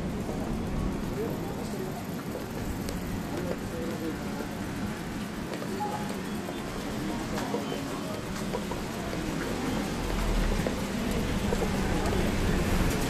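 Shopping-street ambience: a steady mix of indistinct voices of passers-by and traffic noise, with a vehicle's low engine rumble growing louder near the end as it approaches.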